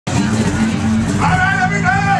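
Live acoustic band playing, with guitars and bass holding low notes. After about a second a singer comes in with high sliding wails that rise and fall.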